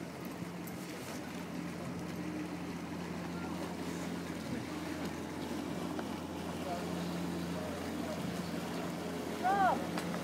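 Outboard engine of a rigid inflatable boat running steadily at low speed while towing a capsized powerboat, a low even hum over the wash of water, growing slightly louder as the boat comes closer.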